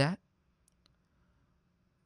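A man's voice ends a word, then near silence with two faint clicks a moment apart, less than a second in.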